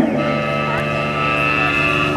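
Electric guitar sustaining one steady note through an amplifier, with a high feedback tone ringing above it.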